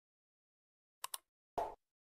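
Sound effects from a subscribe-button animation: two quick click sounds about a second in, then a short pop near the end.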